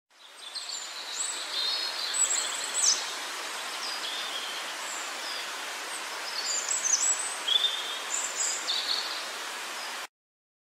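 Forest ambience of scattered high bird chirps and short whistles over a steady hiss. It fades in at the start and cuts off abruptly at the end.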